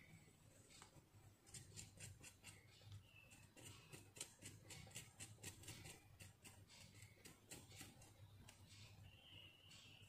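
Faint, quick scratching of a knife blade scraping the thin skin off a fresh turmeric root, a rapid run of light scrapes.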